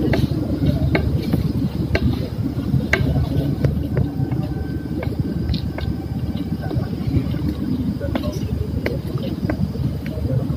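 Indistinct voices of people talking quietly, over a steady low rumble with scattered light clicks.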